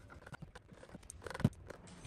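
Faint clicks and light knocks of a plastic scooter battery enclosure being handled, with a quick cluster of sharper clicks about one and a half seconds in.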